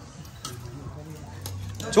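Quiet background of a shared meal: faint voices and a low hum, with a couple of light clicks of tableware about half a second in and again near the end. A man's voice calls out at the very end.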